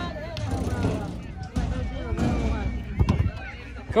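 Background voices and chatter, with one sharp knock about three seconds in as a basketball hits the wooden hoop board of a ball-toss game.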